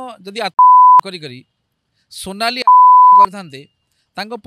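A censor bleep, a steady mid-pitched beep tone, cuts into a man's speech twice: for under half a second about half a second in, and for about half a second a little before the three-second mark. Each bleep is much louder than the voice and starts and stops abruptly.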